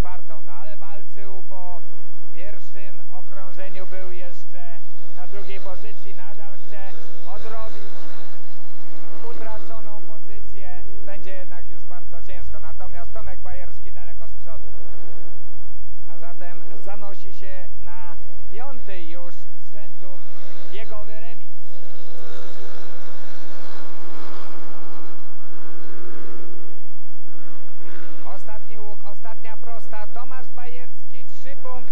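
Speedway motorcycles' 500 cc single-cylinder engines racing round the track, their pitch rising and falling as they accelerate and ease off through the bends.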